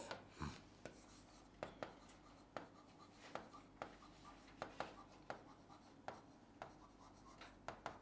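A marker writing on a board: faint, short, irregular strokes and taps of the tip, about two or three a second, as letters are written out.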